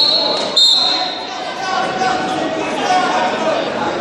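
Referee's whistle blown twice, a shrill steady tone: a short blast right at the start, then a longer one about half a second in, restarting the wrestling bout.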